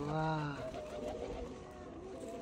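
Pigeons cooing: a low, rising-and-falling coo in the first half-second, then fainter.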